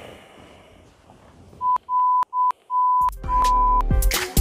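A run of five electronic beeps at one steady high pitch, some short and some long, followed about three seconds in by bass-heavy intro music starting up.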